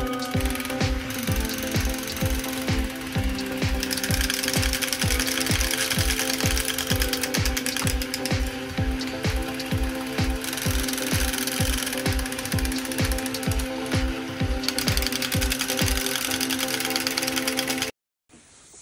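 Several battery-powered crawling soldier toys running at once: tinny electronic music over the whirring and clicking of their geared motors, with a steady pulse about three times a second. It cuts off suddenly at the end.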